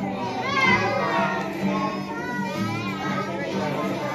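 A group of young children singing loosely together, many small voices overlapping and calling out, with music accompanying them.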